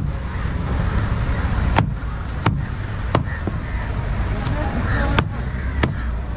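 A heavy machete-style fish knife chopping through bronze bream flesh and bone onto a wooden block: about six sharp, irregularly spaced chops over a steady low rumble.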